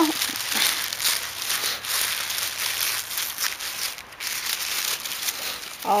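Crinkling and rustling as lace trims are handled and the next one is picked out, a dense run of small irregular crackles.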